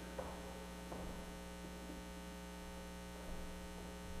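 Steady low electrical mains hum in the church sound system's feed, with a few faint knocks.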